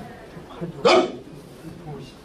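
A man's single short, loud shout, a martial-arts kiai, about a second in, given with a strike to break a stone slab.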